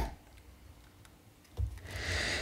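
Mostly quiet, with a few faint light clicks as a plastic action figure is handled and its joints are turned, then a low bump of handling noise near the end.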